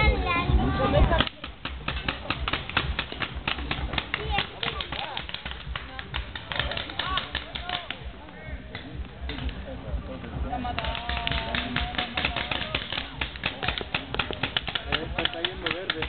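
Paintball markers firing in rapid, irregular volleys, many sharp pops a second, with players' voices calling out now and then, at the start and again about eleven seconds in.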